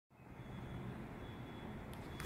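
Faint outdoor background noise: a steady low rumble with a thin, steady high tone above it, fading in over the first half second.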